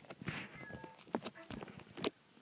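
Sphero BB-8 toy droid's electronic voice: short beeps and warbling chirps at different pitches, broken by a few sharp clicks, one just after a second in and another at the very end.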